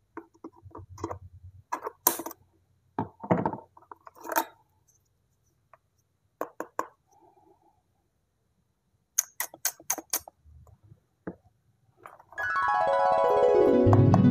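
Scissors snipping through cardboard packaging and small plastic clicks from handling a toy baby bottle, in short scattered bursts. Near the end a loud electronic sound effect comes in, a bright bank of tones sweeping up and down at once for about three seconds.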